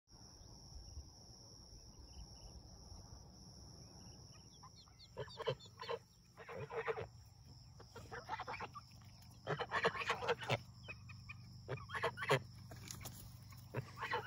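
Crested Polish chickens calling and clucking in short bursts, starting about five seconds in, over a faint steady high-pitched hum.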